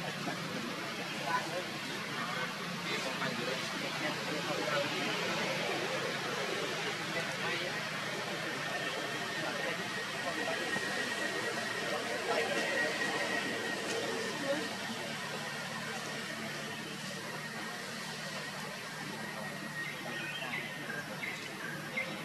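Outdoor ambience: a steady wash of noise with indistinct distant voices. A thin, steady high tone runs from about eight seconds in until near the end.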